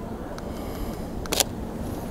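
A DSLR camera's shutter fires once, a short sharp click about a second and a half in, with a couple of fainter ticks before it. A steady low rumble lies under it.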